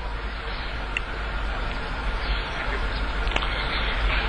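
Steady hiss with a low hum underneath from an open broadcast audio feed, with a faint tick about a second in.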